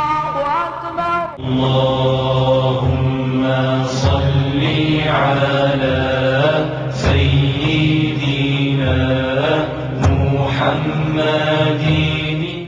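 Background music with a chant-like sung vocal holding long notes over a steady low drone, and a sharp percussive hit about every three seconds. A different piece takes over about a second and a half in.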